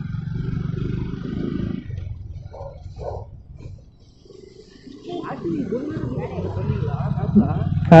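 Hero Splendor Plus's small single-cylinder four-stroke engine running at low road speed. It drops almost away around four seconds in as the bike eases round a corner, then picks up again.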